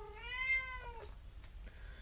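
Domestic cat meowing once: a single drawn-out meow that rises and then falls in pitch, ending about a second in.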